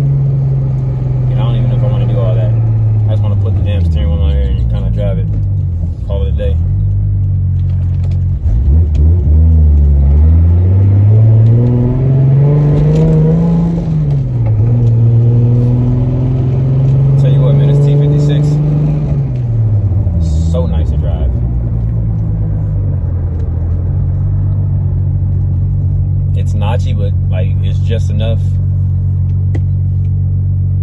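Car engine heard from inside the cabin, its pitch falling as the car slows, then climbing under acceleration about ten seconds in and dropping sharply at a gear change of the T-56 manual gearbox. It falls again around twenty seconds in and settles to a steady cruise for the last several seconds.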